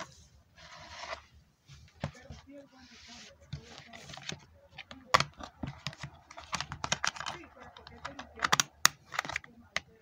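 A DVD disc and its plastic keep case being handled: a run of light plastic clicks, scrapes and rustles, with sharper clicks near the end as the disc is put away.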